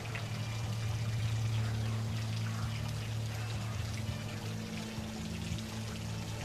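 Pool water pouring and trickling steadily over a steady low hum.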